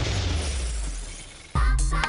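A crash-like transition sound effect tailing off over about a second and a half. Then electronic dance music cuts in suddenly with a heavy bass beat: the programme's title theme.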